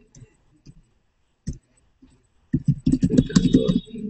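Typing on a computer keyboard: a few scattered keystrokes, then a quick run of keystrokes in the last second and a half as a word is typed.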